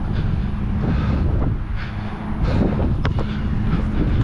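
Wind buffeting the microphone of a head-mounted camera, a steady low rumble, with a single sharp knock about three seconds in from the basketball bouncing on the court.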